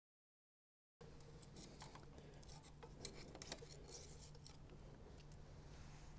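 Faint scraping and rubbing on the OM617 diesel's cast-iron block as the vacuum pump mating surface is cleaned by hand, in irregular strokes with a few sharper ticks, starting about a second in. A low steady hum runs underneath.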